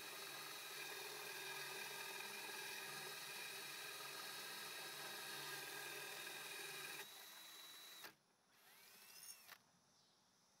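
Porter-Cable cordless drill turning a water-cooled diamond hole saw through aquarium glass, a steady whine of several tones as the saw finishes the cut. The whine drops in level about seven seconds in and cuts off a second later as the drill stops.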